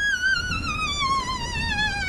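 A single violin note with wide vibrato sliding slowly downward in pitch: a comic 'sad violin' sting played over a tale of being stood up.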